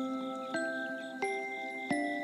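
Slow, gentle instrumental lullaby of bell-like tones, one note about every two-thirds of a second, each note ringing on into the next.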